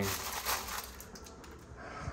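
Faint rustling and a few light clicks from sugar packets being handled in a small caddy, fading to quiet room tone.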